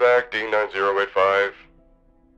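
A voice speaking a short phrase of a few syllables that the recogniser did not write down, over faint background music.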